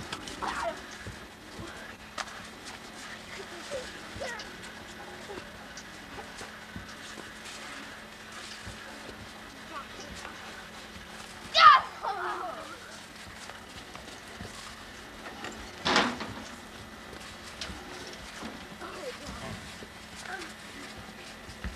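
Children's voices, mostly faint shouts and calls, with one loud high call that falls in pitch past the middle and a short, sharp loud sound a few seconds later.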